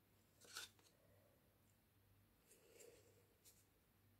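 Near silence: room tone with a faint low hum, broken by a few faint short clicks about half a second in and again near the end.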